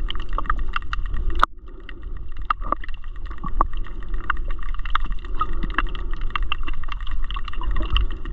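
Underwater sound picked up by a submerged camera over a reef: a steady low rumble with irregular clicks and crackles scattered throughout. One sharp knock comes about a second and a half in.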